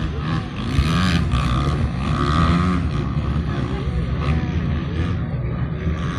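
Several dirt-track racing motorcycles running around a flat-track course, engines revving up and down through the turns, loudest between about one and three seconds in.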